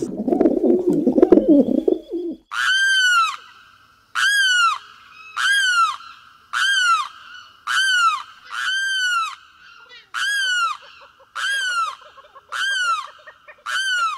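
Domestic pigeon cooing briefly, then a limpkin (carão) calling about ten times in a row, roughly once a second, each a loud wailing call that rises and falls in pitch.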